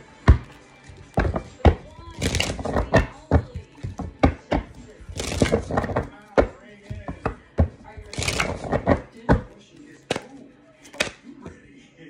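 A deck of oracle cards being shuffled and handled, with sharp taps and clicks throughout and three longer rustling bursts about two, five and eight seconds in.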